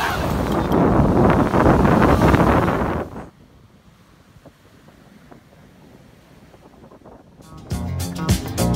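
Whitewater from breaking surf rushing over the shoreline, loud and hissing with wind buffeting the microphone, cut off abruptly about three seconds in. A quiet stretch follows, and music with a beat starts near the end.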